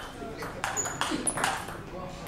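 Table tennis rally: the celluloid-type ball clicking off the players' rubber-faced bats and bouncing on the table, a string of sharp clicks a fraction of a second apart.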